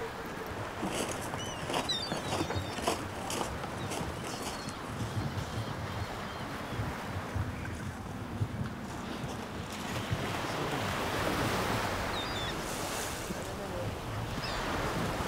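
Wind buffeting the microphone over a steady wash of sea surf, swelling for a few seconds past the middle, with a few faint high chirps.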